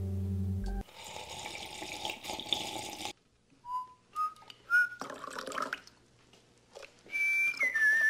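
A man whistling: three short notes, each higher than the last, then a longer held note that steps down in pitch near the end.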